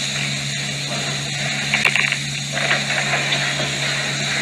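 Steady hum and hiss from an old film soundtrack, with a couple of faint ticks about two seconds in and some indistinct background murmur.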